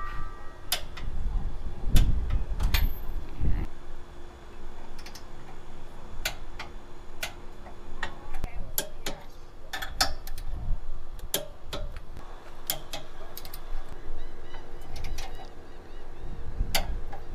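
Ratcheting torque wrench clicking in short irregular strokes as the hitch's L-bracket bolts are tightened to torque spec. A low rumble runs under the first few seconds.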